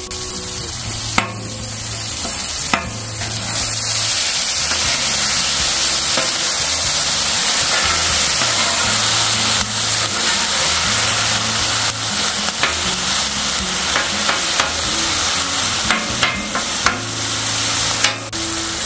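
Ground venison frying in oil and ghee on a hot steel flat-top griddle, sizzling steadily and growing louder over the first few seconds, with a metal spatula scraping and turning the meat against the griddle top.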